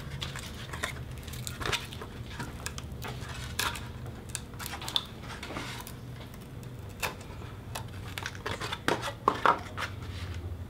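Paper-faced foam board being handled as thin strips of foam are folded back and peeled out of the scored board, giving scattered small crackles and snaps, with a few sharper ones near the end.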